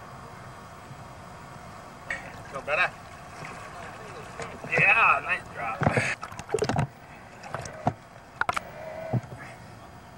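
Ocean water sloshing around a camera down in the surf, with a few brief shouts carrying over the water. Loud splashes come about six to seven seconds in, as a surfer paddles past the camera.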